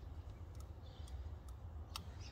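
A few faint ticks of a knife blade marking the rubber sheathing of a heavy battery cable, over a low steady background rumble.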